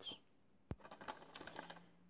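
Plastic Blu-ray case handled and turned over in the hand: one sharp click about two-thirds of a second in, then a run of faint, irregular light clicks and taps.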